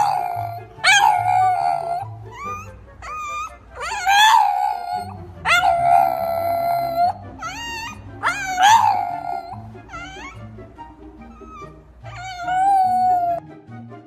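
French bulldog howling in a run of about ten high, wavering howls. Each howl rises and then falls in pitch; some are short yelps and others are held for a second or more.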